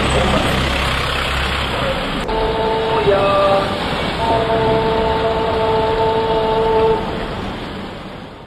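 Busy city-street traffic noise with indistinct voices. From about two seconds in, sustained chord-like tones sound over it, shifting pitch once or twice before holding steady.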